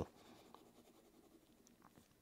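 Near silence with faint scratching of a Parker Jotter fountain pen's medium nib on paper as it shades a block of ink.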